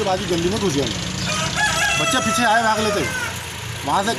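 A rooster crowing once: one long call of about two seconds that starts about a second in and falls away at the end, over a man's voice at the start.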